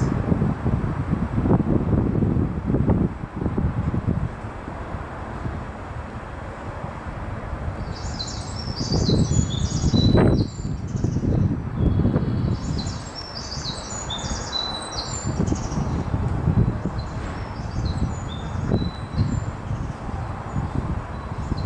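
Birds chirping: clusters of quick, high chirps starting about eight seconds in and recurring until near the end, over a low rumbling noise that swells and fades in gusts.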